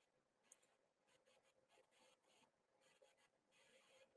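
Near silence: a pause between sentences of speech, with only the faintest trace of sound.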